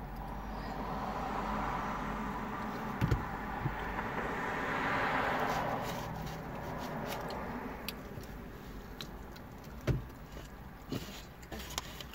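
A vehicle passing outside, heard from inside a car: a smooth rush of tyre and engine noise that swells to a peak about five seconds in and fades away. A couple of soft knocks and a few small clicks sound later.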